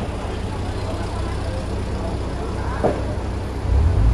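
Low, steady engine rumble of an LPG-fuelled Toyota Coaster minibus idling close by, under the chatter of passers-by on a busy street; the rumble swells near the end.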